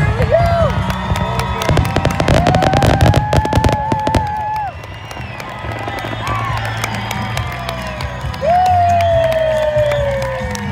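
Fireworks finale: a dense, rapid volley of bangs and crackles that stops abruptly about halfway through, followed by lighter scattered pops. A crowd cheers over it with long whoops, one sliding down in pitch near the end.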